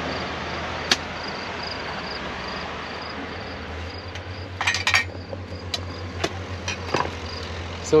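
Steady rushing of a river, with an insect chirping in quick regular pulses about three times a second, a low hum that grows louder about four seconds in, and a few sharp clicks.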